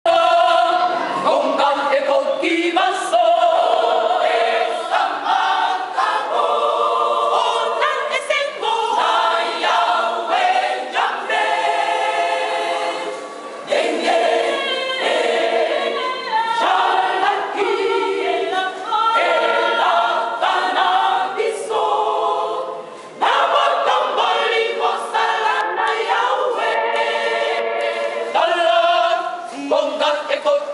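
A women's choir singing in harmony, several voices together, with two short breaks between phrases partway through.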